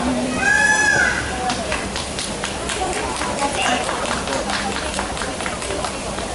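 The last chord of an acoustic guitar dies away, then a small audience applauds with scattered, irregular claps.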